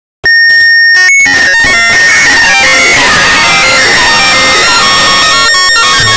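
Extremely loud, distorted music: a dense jumble of many overlapping, stepping tones over noise that cuts in abruptly just after the start and stays pinned at full volume.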